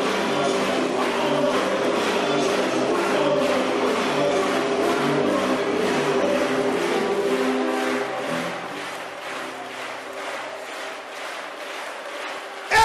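Church worship music with a steady beat and held keyboard chords, under the loud mingled voices of a congregation praying aloud at once. It quietens about eight seconds in.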